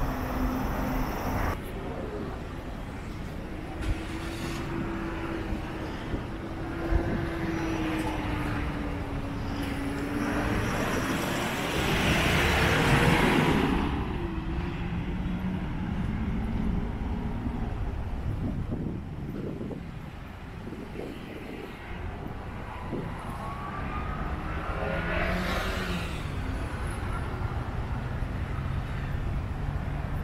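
Road traffic on a multi-lane street: cars and trucks passing, with an engine hum that shifts in pitch early on. One vehicle passes loudly about twelve seconds in, and another about twenty-five seconds in with a rising engine note.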